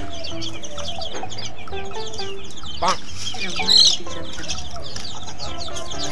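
Chicken clucking over steady background music, with two louder calls near the middle.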